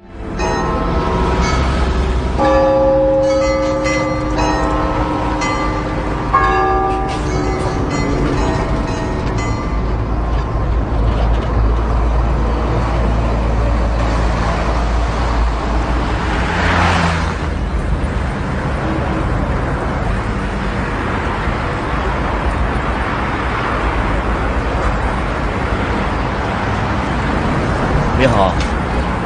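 Street traffic noise, a steady low rumble, under instrumental music whose notes end about ten seconds in; a vehicle passes by about seventeen seconds in.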